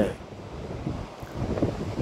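Wind blowing on the microphone, a steady rushing rumble, with the wash of surf behind it.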